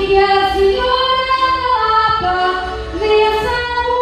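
A woman singing a desgarrada verse through a microphone and PA, in long held notes that step from pitch to pitch, over musical accompaniment.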